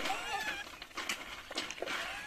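A troop of rhesus macaques feeding in a tight crowd, giving a few faint, short high-pitched squeals early on, with scattered light clicks and scuffles.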